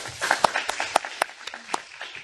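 Audience applauding, with a few sharper single claps standing out; it thins out toward the end.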